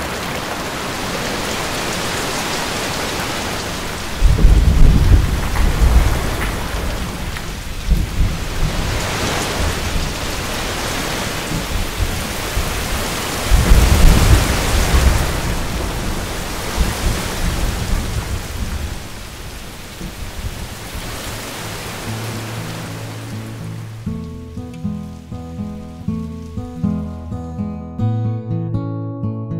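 Steady heavy rain with two long rolls of thunder, the first about four seconds in and the second near the middle. Plucked acoustic guitar music fades in near the end as the rain dies away.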